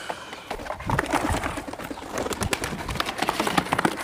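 Pigeons cooing from inside a cardboard box, with a few light knocks of the box being handled.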